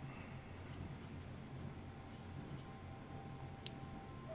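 Felt-tip marker writing on paper: faint, short strokes spaced irregularly, over a low steady hum.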